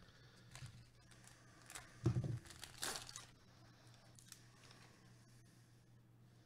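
Plastic trading-card pack wrapper crinkling and tearing as it is opened by hand, in short scattered crackles. There is a dull thump about two seconds in, the loudest moment, and a sharper tearing crackle just after it.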